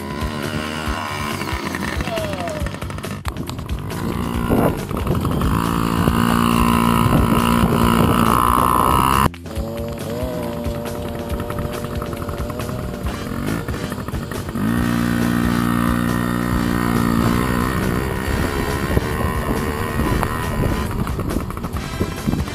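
Motorbike engines running, with the nearest one revving up and holding speed twice. Background music plays along. The sound breaks off abruptly about nine seconds in, then carries on.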